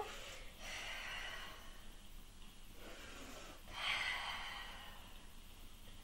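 A woman breathing hard through the effort of a core exercise: two long breaths, the second, starting near four seconds in, the louder.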